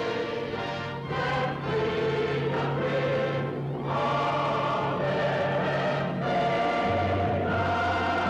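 Orchestral film score with a choir singing long held chords over a sustained bass.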